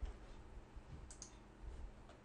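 Faint computer mouse clicks: a quick pair about a second in, with soft low thumps at the start and near the end.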